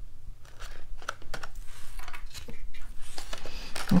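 Cardstock rustling with small scattered taps as fingers press a paper label onto a cardstock pillow box, the handling getting busier in the second half.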